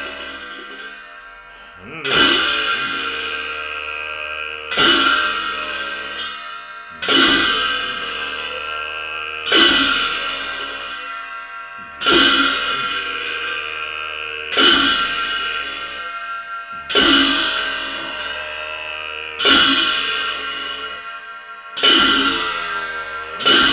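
Slow cham dance music of struck ritual percussion: a loud ringing metallic crash about every two and a half seconds, nine in all, each dying away before the next in a steady, even beat.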